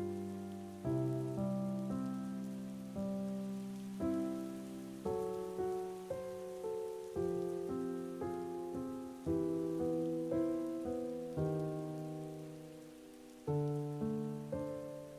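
Slow keyboard chords, each struck sharply and left to fade, following one another about once a second with no vocals, over a faint steady hiss.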